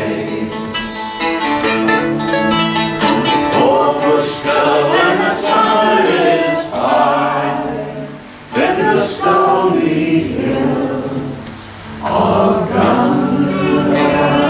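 A man and a woman singing a folk song together, accompanied by a strummed F-style mandolin and an archtop acoustic guitar. The singing breaks briefly between lines about eight and twelve seconds in.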